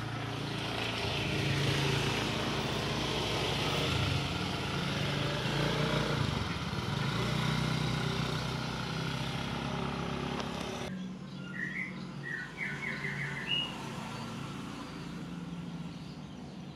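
Outdoor ambience picked up by a phone's microphone. A motor vehicle's engine runs steadily under general noise for most of the first eleven seconds. Then an abrupt cut drops to a quieter background, where a bird gives a short run of chirps.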